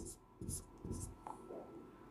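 Dry-erase marker drawing on a whiteboard: a few short, faint scratching strokes.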